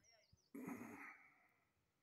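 A person's breathy sigh, starting suddenly about half a second in and fading out over about a second.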